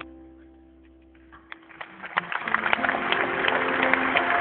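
The song's last held notes fade away, then a large concert audience starts clapping and cheering about a second and a half in, the applause quickly growing loud.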